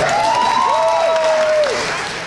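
Audience applauding, with a few drawn-out cheers rising over it; the applause eases off near the end.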